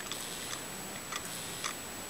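Small DC can motor from a CD player, test-run on bare wires held together, running quietly. A few light ticks sound over it, roughly every half second.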